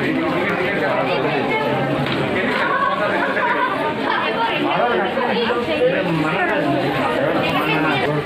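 Several people talking at once: steady, indistinct overlapping chatter of a small crowd.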